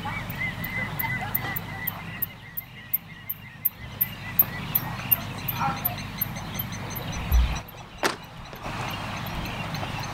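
Outdoor ambience with repeated bird chirps and a fast, regular high ticking. A heavy low thud comes about seven seconds in, followed by a sharp knock, as the elephant handles the axe beside the log.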